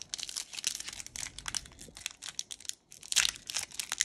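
Foil Pokémon booster pack wrapper being torn open by hand: a run of crinkling and crackling, with a brief lull near three seconds.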